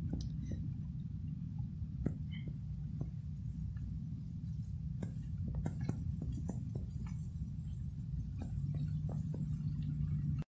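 A vehicle driving on a dirt mountain road, heard from inside the cabin: a steady low rumble with scattered small clicks and knocks.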